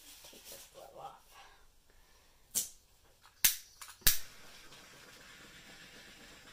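Small handheld butane torch: three sharp clicks of its igniter about a second apart, the third catching, followed by the steady hiss of the flame.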